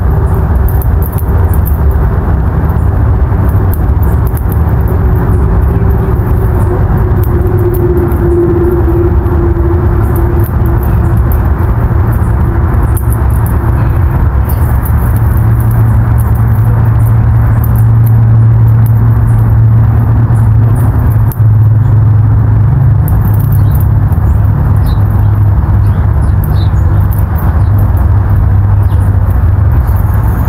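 A loud, steady engine drone with a low hum, its pitch sagging slightly in the first several seconds and then holding steady.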